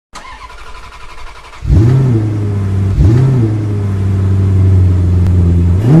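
Car engine starting: a short, quieter cranking, then the engine catches about a second and a half in and runs with a steady low idle, revved up and back down three times.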